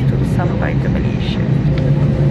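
Steady low drone of an airliner cabin on the ground before takeoff, with brief voices over it.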